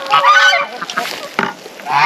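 Domestic goose honking loudly: one call at the start and another near the end, with a short tap in between.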